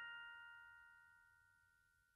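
A chord of bell-like glockenspiel-style lullaby tones ringing out and slowly dying away, with no new note struck; the highest tone fades first, about halfway through.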